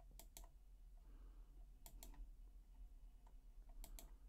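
Faint computer clicks in quick pairs, three pairs about two seconds apart, as a document is scrolled down, over a low steady hum.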